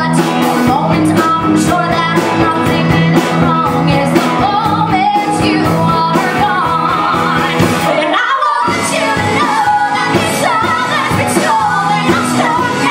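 Two women singing a pop-rock duet with a live band of piano, electric guitar, bass and drums. About eight seconds in, the band stops for a moment under the voices, then comes back in.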